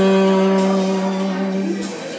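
Tenor saxophone holding one long, steady low note that eases off slightly and stops just before the end.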